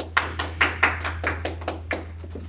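A few people clapping by hand in a room, about four or five claps a second, fading out near the end.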